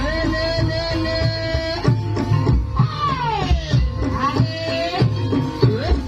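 Live Javanese ebeg accompaniment music played loud over speakers. Regular hand-drum strokes run under a held melody line that wavers and bends, sliding steeply down in pitch about three seconds in.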